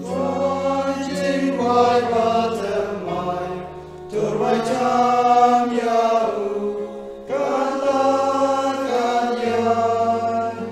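An entrance hymn sung in Khasi by a choir with keyboard accompaniment holding low notes under the voices. It goes in long sung lines with brief dips about three and seven seconds in.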